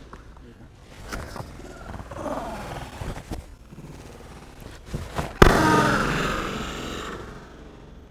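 Sounds of a self-defense takedown on foam mats: a few sharp slaps and scuffs of strikes and grabs, then a loud thud about five and a half seconds in as a man is thrown to the mat. A noisy trail follows the thud and fades over about two seconds.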